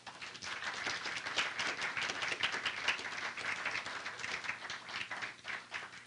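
Audience applauding: dense clapping that starts at once and tails off near the end.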